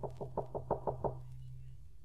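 Radio-drama sound effect of knocking on a door: a quick run of about seven knocks in the first second, over the steady low hum of the old recording.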